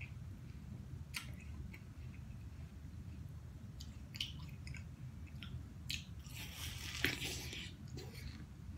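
Close-up chewing of juicy watermelon flesh: soft, wet mouth clicks and smacks, scattered at intervals. About six seconds in comes a longer, louder wet burst as the next bite is taken.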